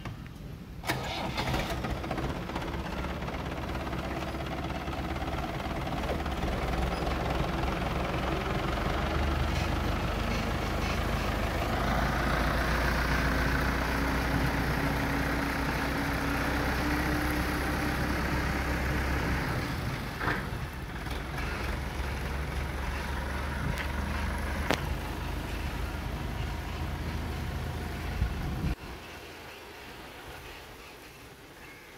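Forklift engine running steadily as the truck drives off, a little louder in the middle stretch. The sound cuts off suddenly near the end.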